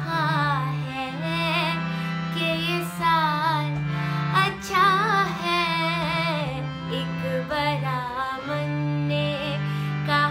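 A woman singing an Urdu ghazal solo, her melody line wavering and ornamented, over sustained low accompaniment notes that shift every second or two.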